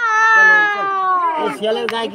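A high voice starting suddenly with one long cry that slowly falls in pitch, like a child crying. It then breaks into shorter, choppier voice sounds about a second and a half in.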